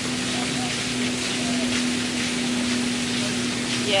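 Steady background hiss with a constant low hum underneath; no distinct event stands out.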